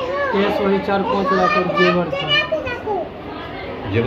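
Voices: high-pitched children's chatter mixed with a man talking.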